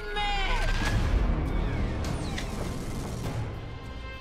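A woman's scream falling in pitch and breaking off about half a second in, followed by a dense, loud rumble of crashing trailer sound effects over music.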